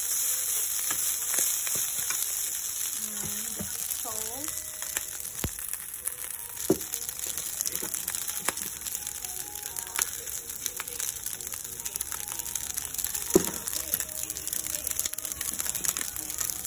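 Rice frying in a pan, sizzling while a wooden spatula stirs it, with a few sharp knocks of the spatula against the pan. The sizzle is strongest at first and eases off about halfway through.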